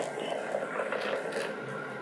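Blended walnut milk pouring from a glass blender jar into a cloth strainer bag, a soft steady splashing.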